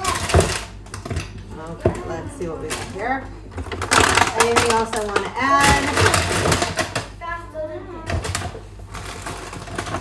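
Voices talking, over knocks and clatter of kitchen items being moved about and set down.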